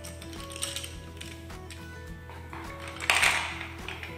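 Wooden spindles clicking and rattling as a handful is gathered up, then a louder clatter about three seconds in as they are dropped into a compartment of a wooden spindle box. Soft background music with held notes plays throughout.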